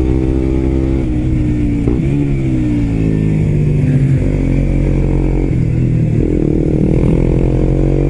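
Suzuki GSX-R125's single-cylinder engine running through an aftermarket muffler, heard from the bike while riding: the engine note drops and picks up again with throttle and gear changes, then rises steadily near the end as the bike accelerates.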